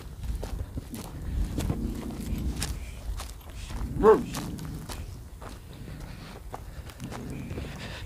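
Footsteps crunching on dry, stony ground as people walk across it, over a low rumble. About four seconds in there is one brief cry that rises and falls in pitch.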